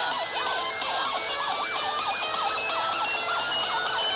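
Electronic dance music: a siren-like synth lead swoops up and down a few times a second over short, high synth notes.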